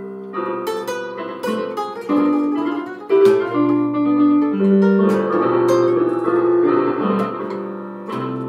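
Electronic keyboard played with both hands: a melody over lower chords, each note starting sharply and fading away.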